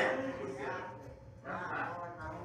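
Faint voices of a congregation calling out short responses in a pause of the preaching, twice, after the tail of a man's "Amen".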